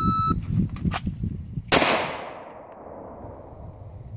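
Shot timer gives one short, high beep, and about a second and a half later a Glock 26 subcompact 9mm pistol fires a single shot, drawn from concealment. The report is the loudest sound and its echo fades over about a second.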